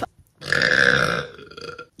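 A woman's single long, loud burp, lasting about a second and fading out.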